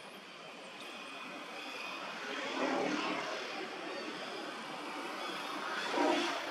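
Distant engine drone that swells twice, loudest about three seconds in and again near the end.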